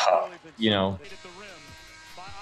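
Speech: a man says "you know" with a falling pitch, then only a faint background sound.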